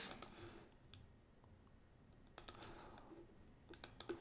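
A few faint computer mouse clicks at uneven intervals: one about a second in, a pair about two and a half seconds in, and another pair near the end.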